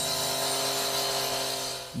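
Handheld two-stroke petrol disc cutter (cut-off saw) running at high speed while cutting masonry: a steady, high engine note with the hiss of the blade in the cut, fading near the end.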